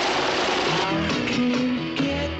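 A dense rushing noise for the first second gives way to rock music led by electric guitar.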